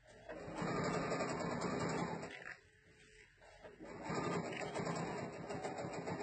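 Sewing machine with a walking foot stitching a seam: it runs for about two seconds, stops for about a second and a half, then starts again.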